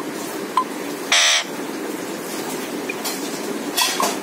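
An Alexandrine parakeet gives one short, harsh screech about a second in, then a weaker squawk near the end, over a steady low background hum.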